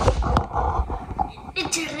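Handling noise from a phone being moved while filming: low thumps and rustling with a couple of sharp knocks. A child's voice starts to speak near the end.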